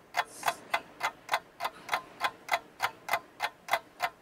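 Steady ticking, like a metronome, about three even clicks a second, with a short breathy rush about half a second in.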